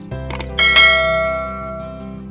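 Two quick clicks, then a bright bell chime that rings out and fades over about a second: the click-and-bell sound effect of a subscribe-button animation, over steady background music.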